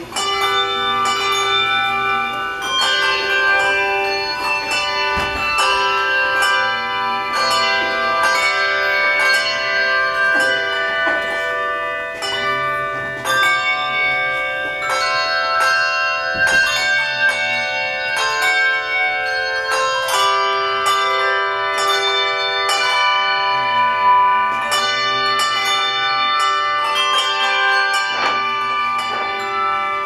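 A handbell choir playing a tune: many hand-rung bells struck in turn, their notes ringing on and overlapping.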